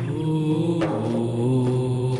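Intro music of wordless chant-like voices holding long drawn-out notes, stepping to a new pitch every second or so.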